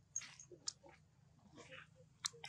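Faint macaque sounds: a few short breathy noises and a sharp mouth click, with another soft breathy sound near the end.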